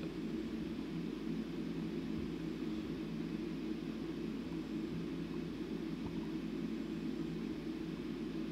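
Steady low hum with a faint hiss and no distinct events: background room tone.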